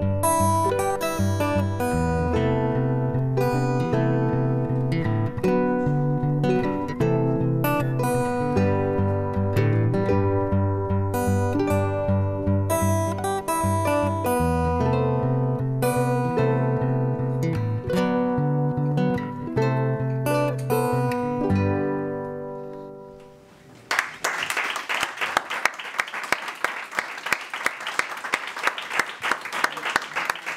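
Acoustic guitar and a small plucked string instrument play the wordless ending of a slow folk song, and the last chord fades out about 22 to 23 seconds in. Then an audience starts clapping and applauding, about 24 seconds in.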